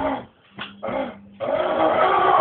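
Animal-like vocal noises in short bouts, broken by a brief pause about half a second in, then louder in the second half.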